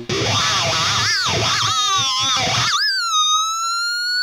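Distorted ESP LTD MH-401FR electric guitar through a wah playing a fast, bending lead line, then the high squeal: one high note held with sustain for the last second or so, slowly bending up in pitch.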